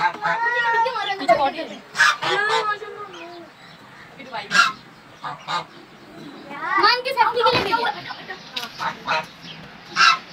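Domestic goose honking in bouts of repeated calls: one bout in the first second and a half, another around two seconds in, a few single calls in the middle, and a longer bout around seven seconds in.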